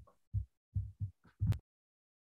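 Five short, low, muffled thumps in quick succession over about a second and a half, then silence.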